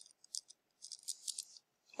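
A pen writing on a paper notepad: a few short, faint scratches as figures are written.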